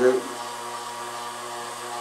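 A man's voice humming a short "do" at the start, then a steady low drone of several held tones, unchanging to the end.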